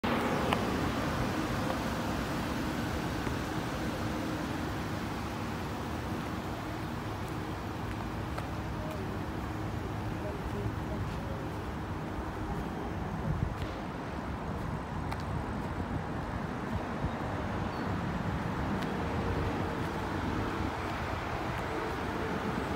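Steady low hum and rumble of a motor vehicle, heard through outdoor background noise.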